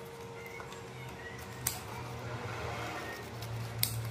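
Scissors snipping through a broad dracaena leaf, two sharp cuts about two seconds apart, as the leaf is trimmed to shape.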